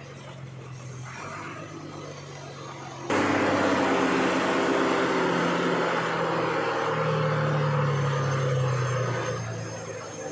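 Heavy diesel vehicle engine running while climbing a hairpin bend on a ghat road, heard from inside the cab. About three seconds in it suddenly gets much louder. Its pitch rises slightly around seven seconds, and it eases off just before the end.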